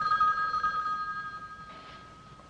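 A telephone bell ringing once: a fast trilling ring that starts suddenly and fades away over about a second and a half.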